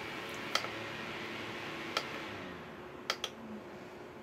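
AC Infinity Cloudray S6 6-inch clip-on fan running with a steady airflow hiss and faint hum while its control is clicked four times: about half a second in, at two seconds, and a quick pair near three seconds. The airflow gets quieter after the second click as the fan is turned down.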